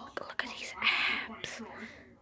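Soft whispering close to the microphone, with a few faint clicks.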